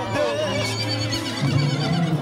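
A horse whinnies briefly near the start, a short wavering call that falls in pitch, over music that plays throughout.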